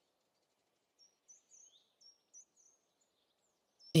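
Faint outdoor ambience: a small bird chirping, a run of short, high chirps that each slide downward, over a faint low background hiss.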